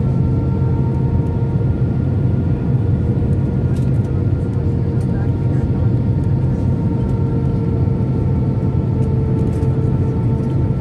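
Steady noise of engines and airflow inside an Airbus A319 cabin on final approach with flaps extended, heard from a window seat over the wing: an even low rumble with a few steady whining tones running through it.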